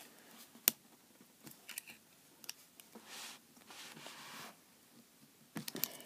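Faint clicks and scrapes of small metal vape dripper parts being handled and worked at, with a part stuck fast. One sharp click comes under a second in, then lighter clicks and soft scraping, and a quick run of clicks near the end.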